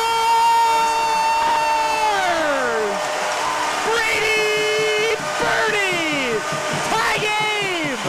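Arena goal horn blowing for a home-team goal, three long blasts, each sliding down in pitch as it cuts off, over crowd noise.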